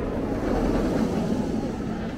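Steel roller coaster train running along its track, a steady low rumble.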